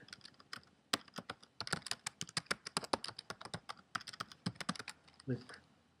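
Typing on a computer keyboard: a single keystroke about a second in, then a quick run of key clicks, roughly five or six a second, that stops shortly before the end.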